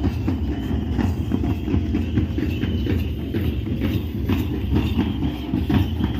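Drums beating a fast, repeated run of strokes for a tribal line dance, over the noise of a large crowd.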